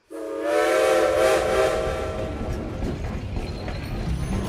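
Steam train whistle sounding a steady chord of several tones over a hiss of steam for about two seconds, then fading into a rushing hiss and rumble.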